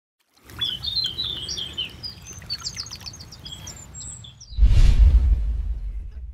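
Songbirds chirping and singing over a low rumble. About four and a half seconds in, a sudden loud rush of sound with a deep boom sets in and fades over about a second and a half.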